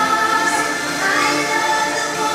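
A woman singing long held notes over a live dance-music backing.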